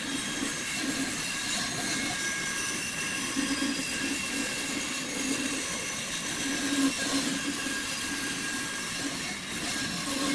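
Bandsaw running and cutting the outline of a Cuban mahogany bass neck blank: a steady machine sound with a lower note that swells and fades several times as the wood is fed through the blade.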